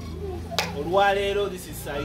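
A man's voice speaking, with a single sharp click just over half a second in.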